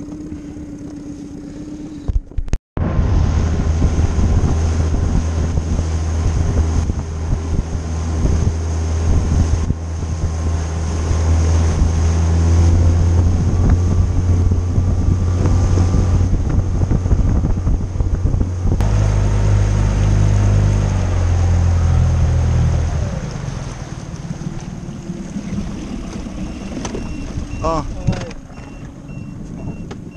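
Small outboard motor driving an inflatable boat at speed: a steady low drone with wind and water spray noise. It starts abruptly after a short gap, shifts in pitch about nineteen seconds in, and drops away about twenty-three seconds in as the boat slows.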